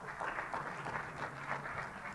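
Audience applauding, a dense, even patter of many hands clapping.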